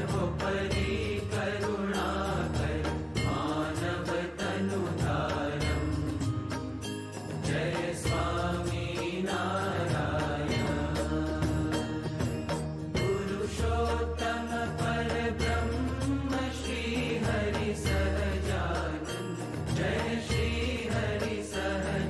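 Hindu devotional arti hymn sung by voices with instrumental accompaniment and percussion keeping a steady beat.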